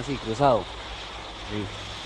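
Single-engine crop-spraying airplane droning steadily on its propeller engine, after a brief spoken sound about half a second in.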